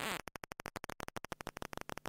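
Geiger counter clicking rapidly, more than ten clicks a second, the sign of radioactivity.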